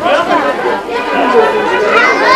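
Several people talking at once, their voices overlapping in general chatter.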